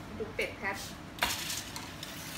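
A foil-lined metal baking tray with a wire rack is set down on a countertop, with one sharp clatter about a second in.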